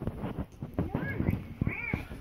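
A baby's two short, high-pitched squeals that rise and fall in pitch, the first about a second in and the second near the end, over light clicks and knocks of toys being handled.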